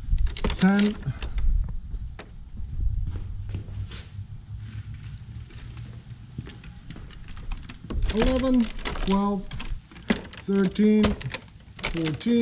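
Plastic water bottles being set one by one into a hard cooler: a string of short knocks, taps and crinkles.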